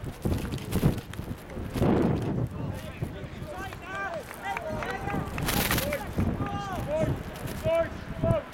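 Wind rumbling and buffeting on the microphone over a grass football pitch, with distant voices shouting and calling out in short cries from a few seconds in.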